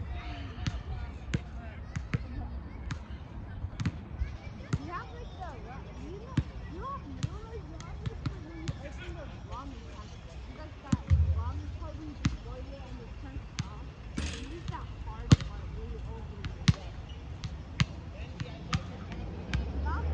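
Outdoor ambience with a steady low rumble, broken by sharp knocks at irregular intervals, about one or two a second, the loudest about fifteen seconds in.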